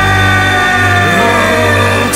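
Rock-metal tango arrangement played by a band with a string quartet and piano. A high held line slides slowly downward over a steady low bass.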